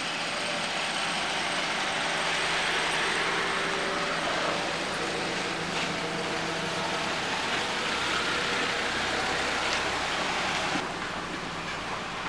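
Toyota SUVs driving slowly by on a dirt road: a steady noise of engines and tyres that thins out near the end.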